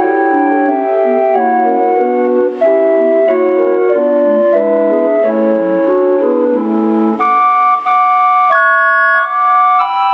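Electric calliope with brass pipes playing a tune from a perforated paper music roll, several notes sounding together in chords under a melody. A little after seven seconds in, the low notes drop out and only higher notes carry on.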